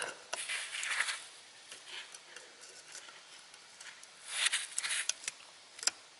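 Pliers gripping and working a spring band clamp on a rubber coolant hose, loosening it so the hose can come off the idle air control valve. Small metal clicks and scrapes, with a longer scraping burst a little past the middle and a sharp click near the end.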